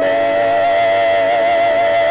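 Hymn singing: voices hold one long note with a slight vibrato.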